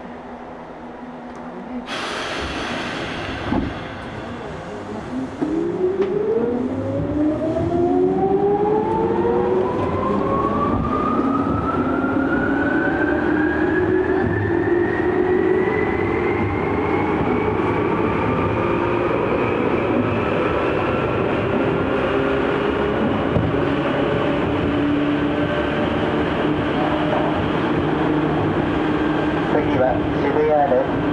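Tokyu 8500-series electric train heard from inside the car as it pulls away. Its motors whine in several tones that rise steadily in pitch for about fifteen seconds and then level off, over the continuous rumble of the wheels on the rails. A sudden rush of noise comes in about two seconds in.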